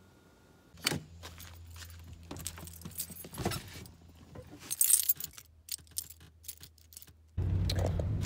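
Car keys jangling and clattering in the hand, with many small clicks and rattles, over a faint low hum inside the car. Near the end a much louder, steady low rumble of the car running suddenly sets in.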